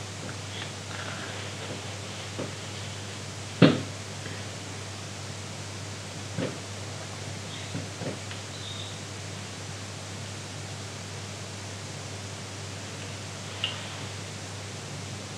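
Quiet room tone: a steady hiss with a low hum underneath, broken by a few faint clicks and one sharper knock about three and a half seconds in.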